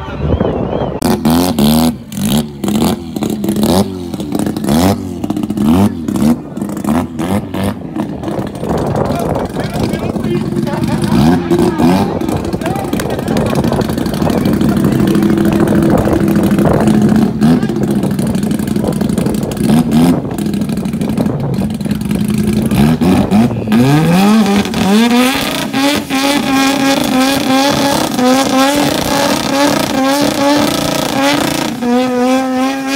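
Drag-racing pickup truck's engine revving in short blips, then, about three-quarters of the way in, climbing to high revs and held there as it spins its rear tyres in a burnout.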